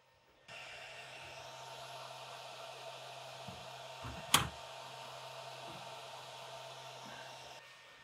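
Laser engraver's enclosure fan running as a steady whoosh with a low hum, starting about half a second in and stopping just before the end. A single sharp click comes about four seconds in, as the cut wood pieces are handled on the honeycomb bed.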